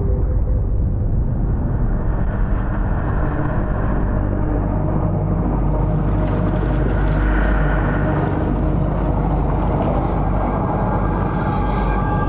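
Steady, loud underwater rumble with a low held drone, muffled at first, with a brighter hiss gradually opening up over the second half.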